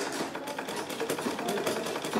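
Treadle sewing machine running at speed, its needle mechanism clattering in a fast, even run of clicks while the handwheel spins.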